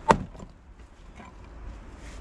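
A 6 lb splitting maul strikes a red oak firewood round once, a single sharp crack with a short ring just after the start, splitting the round. A few faint ticks follow.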